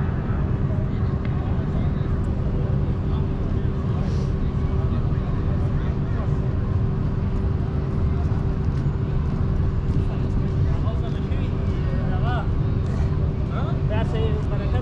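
Busy public square ambience: a steady low traffic rumble and hum under the voices of people talking nearby, with a voice rising out of it near the end.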